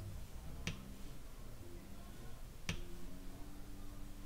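Two small, sharp clicks about two seconds apart from hands at work on nail art: a metal dotting tool and long artificial nails ticking against nails or tools.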